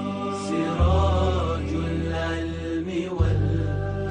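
Closing ident music of a TV broadcast: a voice singing a wavering, ornamented melody over a low held bass drone that shifts to a new note about a second in and again a little after three seconds.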